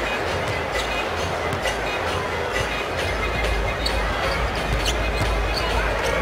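A basketball being dribbled on a hardwood court, a few irregular taps over a steady arena din of crowd noise.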